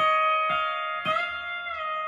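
Pedal steel guitar in E9 tuning played through an amplifier: notes plucked and sustained, a second or so in one pitch glides smoothly up about a whole step as a knee lever raises a string, then glides back down near the end as the lever is released.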